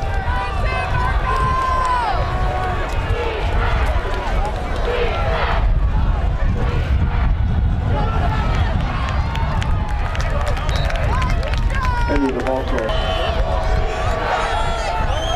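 Spectators in a football crowd talking and calling out over one another, several voices at once, over a steady low rumble.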